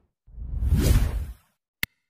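Whoosh sound effect that swells and fades over about a second, followed near the end by a single short click like a mouse click on a button.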